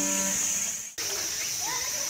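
A few held tones of background music fade out in the first second. After a cut, a steady high-pitched insect drone fills the rest.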